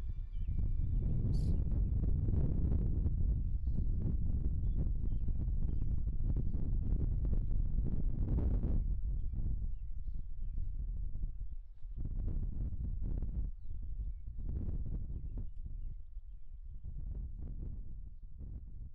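Outdoor ambience made up mostly of wind rumbling and buffeting against the microphone. It is uneven and gusty and dies down over the last several seconds.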